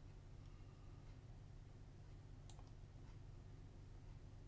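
A few faint, scattered computer mouse clicks, the clearest about two and a half seconds in, over near-silent room tone with a faint steady high whine and low hum.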